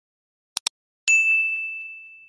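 Two quick clicks close together, like a mouse-click sound effect, then a single bright bell ding that rings out and fades over about a second: a notification-bell sound effect.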